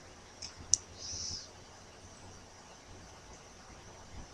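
Two small clicks under a second in, the second one sharp, followed by a brief soft hiss; otherwise faint, steady room noise.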